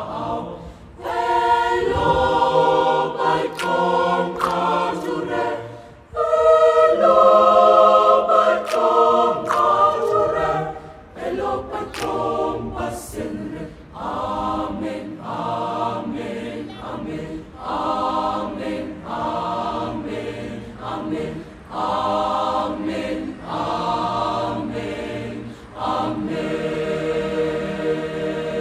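Youth choir singing a Damara/Nama song, many voices in harmony in short phrases of about a second each with brief breaks between, and short sharp clicks among them.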